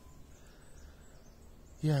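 Faint, steady outdoor background noise with no distinct sound in it, then a man says "yeah" near the end.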